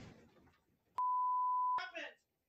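A steady, high censor bleep about a second in, lasting most of a second and masking a spoken word, amid a person's exclamations of "God".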